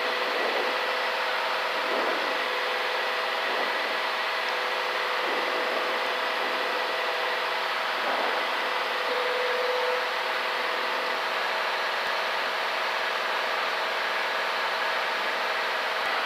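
Steady drone of a Columbia 350's six-cylinder Continental IO-550 engine and propeller at climb power, heard in the cabin with the rush of the airflow.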